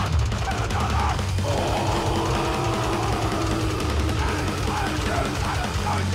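Grindcore band playing live at full volume: heavily distorted guitar and bass over fast drums, with shouted vocals and a long held scream or note through the middle.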